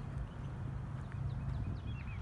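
Footsteps of a person walking on a paved trail over a steady low rumble, with a few faint, short bird chirps in the distance.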